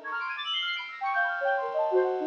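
Synth arpeggio from an Ableton Operator 'Brass-Brassy Analog' patch: a fast run of short brassy notes stepping down in pitch from high to low, each note overlapping the next.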